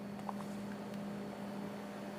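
Room tone: a steady low hum over a faint hiss.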